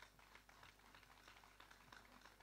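Near silence, with faint, irregular small clicks and crinkles from a plastic water bottle being handled close to a handheld microphone.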